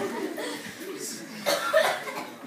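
A person coughs once, about one and a half seconds in, over low murmuring in the room.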